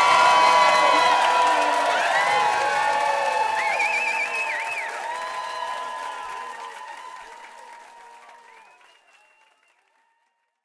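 Large crowd cheering, whooping and applauding after a song, with many voices shouting over the clapping. It fades out over the second half and is gone by about nine seconds in.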